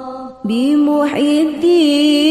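Arabic sholawat being chanted, a voice holding long, slowly wavering notes. There is a short break just under half a second in before the next line begins.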